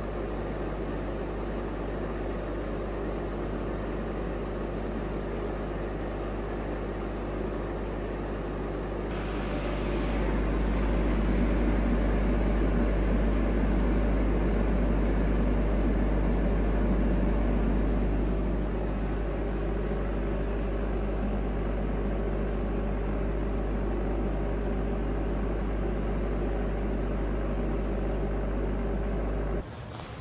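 Orbital TIG welding machine running through an automatic weld: a steady machine hum and hiss. It grows louder about nine seconds in, then eases back a little about two-thirds of the way through.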